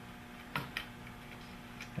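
A few light clicks from hands handling a circuit board as it is pressed down on its standoff clips: two close together about half a second in and a fainter one near the end, over a faint steady hum.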